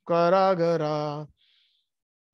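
A man chanting a devotional verse in a slow, sung recitation, holding steady notes that step down in pitch; he stops about a second and a quarter in.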